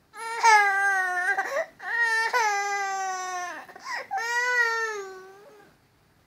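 A toddler crying: three long wails, each a little falling in pitch, the last fading away.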